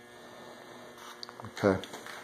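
Faint, steady background hum with a few light clicks about a second in; a man says "okay" near the end.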